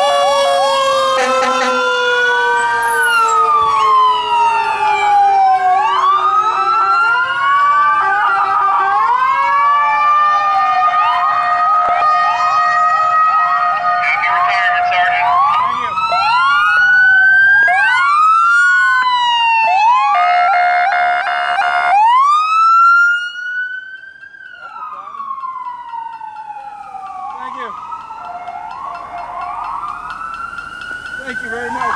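Several emergency-vehicle sirens sounding together as fire, ambulance and police vehicles pass: overlapping rising and falling wails and quick yelps, with one slow falling tone over the first several seconds. A loud horn blast comes about 20 seconds in, after which the sirens drop in loudness and carry on more quietly.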